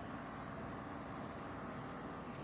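Steady, even background noise with no distinct events: a faint hum and hiss behind a pause in speech.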